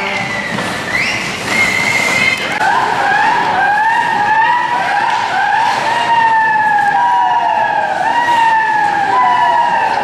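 Spectators cheering in an ice rink: several high, overlapping wailing tones, each sliding downward like a siren, from about a second in.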